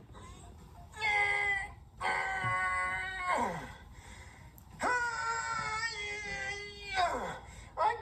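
A man's high-pitched voice-acted groaning in three long strained efforts, the last two trailing off in a falling pitch: a puppet character straining and failing to do a sit-up.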